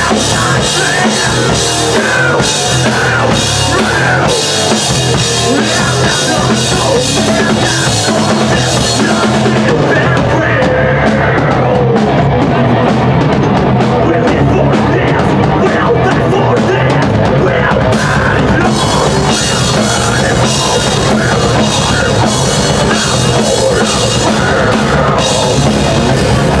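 Thrash metal band playing live at full volume: distorted electric guitars over a pounding drum kit. The bright top end drops away for several seconds in the middle, then returns.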